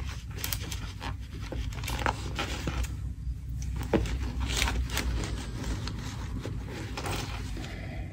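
Close-up handling of a fabric utility pouch and the items being tucked into its back: scattered small taps, scrapes and rustles, over a low steady rumble.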